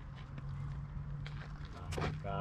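Quiet outdoor background with a low steady hum and a few faint clicks, the sharpest one near the end.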